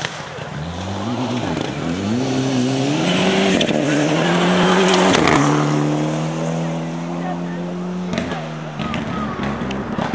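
A Ford Escort rally car's engine accelerating hard, its note rising in steps as it changes up through the gears. It is loudest as it passes about five seconds in, then holds a steady note until the driver lifts off about eight seconds in.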